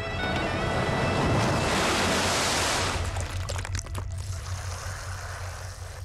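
Film background music with held tones under a loud rushing swell, like surf, that peaks about two seconds in and fades by three. A few sharp clicks follow.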